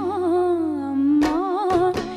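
Tamil film song: a woman's voice holding one long, wavering note over soft accompaniment, with a couple of light beats near the end.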